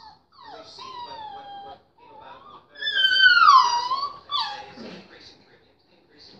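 A puppy whining in three drawn-out cries that fall in pitch: one about half a second in, the loudest a little before halfway, and a short one that slides steeply down just after it.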